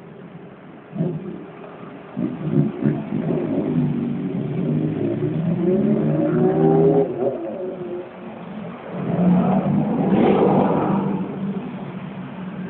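Motorcycle engines revving as the bikes pull away: a couple of sharp blips, then pitch rising and stepping down with each gear change. Near the end a car passes close by.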